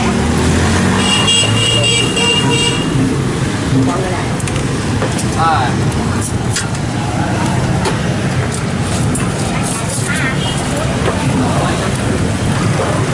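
Busy street traffic, mostly motorbikes passing close by, as a steady low rumble, with scattered background voices. A short high-pitched pulsing beep sounds about a second in and lasts under two seconds.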